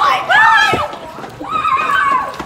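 Teenage girls' high-pitched excited squeals, two yells that each rise and fall in pitch.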